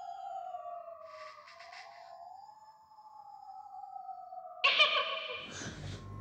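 Eerie horror film score: slow, sliding tones drift downward in pitch, then a sudden loud sting bursts in near the end.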